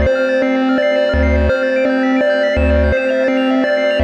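Moog Subharmonicon analog synthesizer playing a sequenced pattern through a delay pedal. A steady held tone runs under a low bass note that repeats about every second and a half, while higher notes step in a looping sequence.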